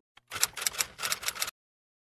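Typewriter-style clicking sound effect: a rapid run of key clacks lasting just over a second, cutting off suddenly.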